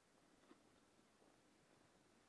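Near silence: faint steady hiss with one faint tick about half a second in.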